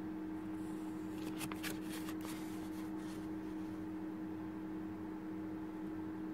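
A few brief crinkles of a plastic polymer banknote being handled and turned over in the first couple of seconds, over a steady low hum.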